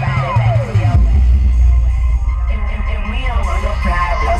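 Music played loud through a car trunk audio system: two 12-inch Infinity subwoofers driven by a 4000-watt Lanzar amplifier, pounding out heavy bass. A falling pitch sweep in the music drops away during the first second.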